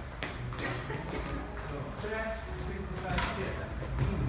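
A voice calling out over background music with a steady low beat, with short knocks scattered through.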